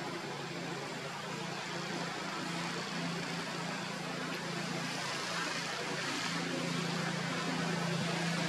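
A steady low motor hum over a constant noisy hiss, like an engine running, growing slightly louder towards the end.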